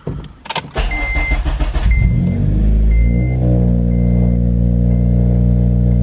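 Cold start of a Honda Civic Si's 2.0-litre four-cylinder, heard from inside the cabin: the starter cranks for about a second, the engine catches and its revs climb, then it settles into a steady fast idle. A high dashboard warning chime beeps about once a second, fading away.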